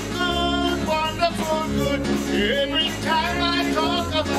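Live church praise music: a woman singing into a microphone over a band with keyboard and drums, a steady low line changing notes about once a second.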